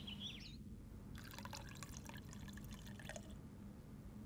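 Tea being poured from a teapot into a small porcelain cup, a faint splashing trickle starting about a second in and stopping about two seconds later.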